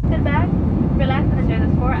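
Airliner cabin noise in flight: a steady, loud low rumble, with a voice speaking over it in short phrases.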